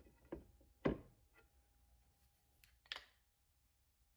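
Cut pieces of wood being handled and set down on a workbench: a few short wooden knocks, the loudest about a second in.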